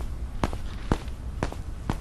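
Footsteps, evenly spaced at about two steps a second, over a steady low hum.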